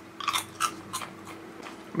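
Toffee popcorn being bitten and chewed with the mouth close to the microphone: a quick run of crisp crunches, strongest in the first second and fading as the chewing goes on.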